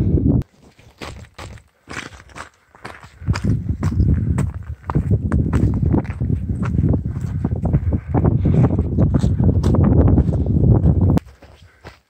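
Footsteps crunching and clattering irregularly over rock and scree, with heavy low noise on the microphone under them; it all stops about a second before the end.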